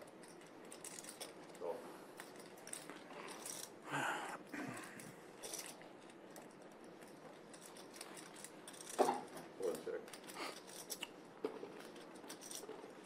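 Poker chips clicking lightly and irregularly as they are handled at the table, with faint murmured voices in the background.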